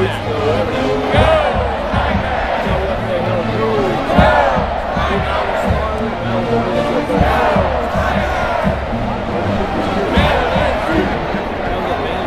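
Stadium crowd noise: many voices talking and shouting at once, with music underneath.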